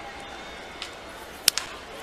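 Low steady crowd noise from a ballpark, broken about one and a half seconds in by a single sharp crack of a wooden bat hitting a baseball squarely: a hard-hit ball.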